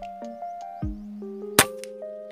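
A single sharp shot from a PCP air rifle firing a slug, about one and a half seconds in, over background music with a steady beat.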